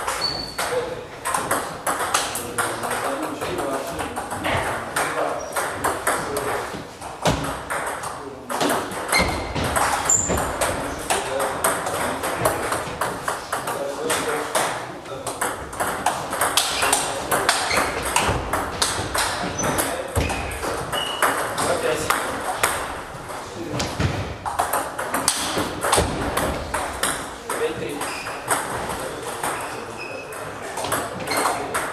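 Table tennis being played: the ball ticking back and forth off bats and table, a dense stream of sharp clicks through the whole stretch.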